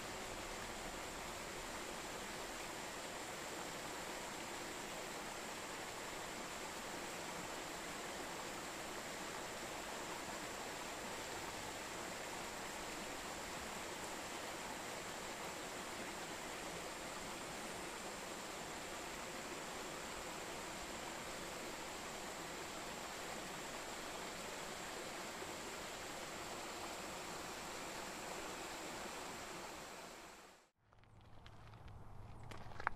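River water flowing as a steady, even rush, with a thin high tone held steady above it.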